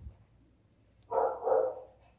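A small dog barking, a short double bark about a second in.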